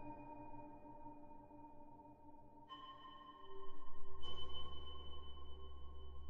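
Ambient electronic music from a Mutable Instruments modular synthesizer: sustained, pure held tones that shift to new pitches twice. About halfway through, a quickly pulsing low bass comes in and the music grows louder.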